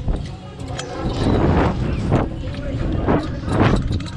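Air rushing and buffeting over the microphone of a camera mounted on a Slingshot reverse-bungee ride as the seat capsule is flung through the air, a heavy uneven rumble. The riders' voices break through several times.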